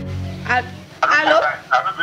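Background music fading out in the first half-second, then a person talking in short phrases.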